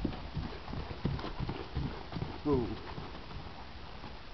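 Hoofbeats of a horse loping under a rider on a grass and dirt paddock, a run of dull irregular thuds that fades out after about two seconds as the horse slows to a walk. A person's voice says "ooh" about halfway through.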